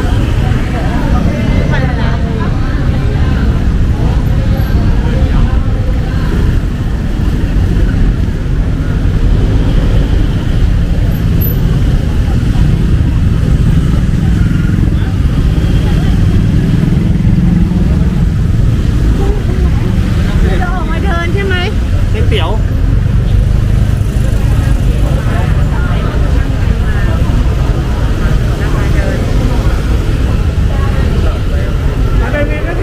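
Busy street ambience: motorcycles running and moving past among the chatter of a crowd, over a steady low traffic rumble. A brief wavering high call stands out about twenty-one seconds in.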